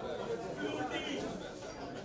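Indistinct background voices of people talking, no single clear speaker.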